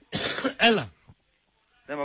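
A man clears his throat in one short, rasping cough near the start, ending in a brief voiced grunt that falls in pitch.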